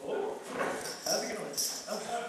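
Actors speaking stage dialogue in short, animated phrases.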